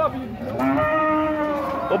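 A young heifer mooing once, one long steady call of about a second and a half.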